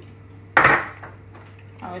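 One short clatter about half a second in, as a small container is knocked against a plastic blender bottle to tip cayenne pepper into it, over a low steady hum.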